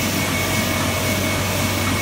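MAN Roland sheet-fed offset printing press running: a loud, steady mechanical noise with a constant low hum and a thin high whine.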